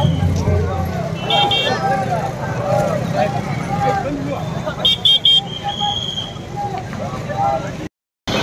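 Crowd of many overlapping voices from a large group of people on foot in a street procession, with a vehicle horn beeping a few quick times about a second and a half in and again about five seconds in.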